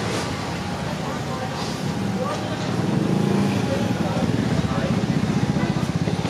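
Night street sounds: a motor vehicle engine running close by, its low, fast-pulsing rumble growing louder about halfway through, with people's voices around.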